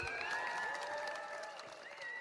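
Audience applause at the end of a live song: faint scattered clapping that fades, with a few held, wavering tones over it.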